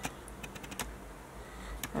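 Clear plastic packaging around a duvet cover crackling under the fingers as it is handled, in a few scattered light clicks.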